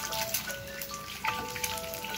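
Eggs frying in hot oil in a pan, with a steady crackling and popping sizzle. A simple melody of held notes plays over it.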